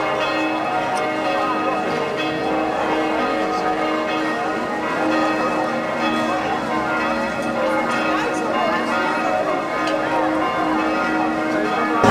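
Church bells ringing in a continuous peal, many bell tones overlapping and sounding on together.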